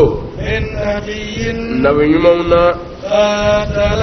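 A man's voice chanting Quranic verses in melodic recitation, drawing out long held notes that step up and down in pitch.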